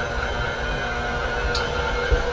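KitchenAid stand mixer running steadily, its paddle working a stiff butter-cookie dough in the steel bowl, with a brief high scrape about one and a half seconds in.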